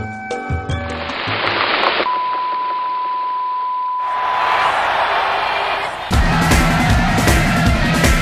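A music bed ends in a hiss of TV static. A steady 1 kHz test tone then sounds over the static for about two and a half seconds. About six seconds in, a rock band with drums and guitar starts up loudly.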